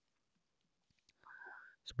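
A pause that is near silence, broken about a second and a quarter in by a faint, short breath drawn through the mouth. A spoken word starts at the very end.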